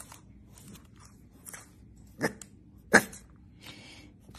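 French bulldog puppy giving two short, sharp barks about a second apart, the second louder.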